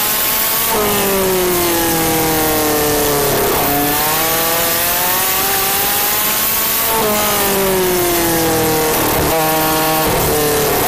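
Midget race car engine recorded onboard at speed, over a steady rush of noise. Its pitch jumps and then falls away twice as the car goes into the turns, and climbs again in between as it accelerates.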